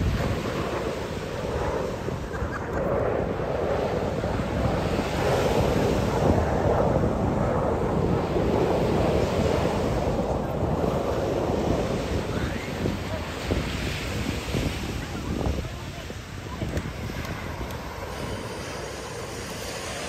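Distant rushing roar of the Red Arrows' BAE Hawk jets in formation, swelling over the first several seconds and easing off after about fifteen seconds, with wind buffeting the microphone.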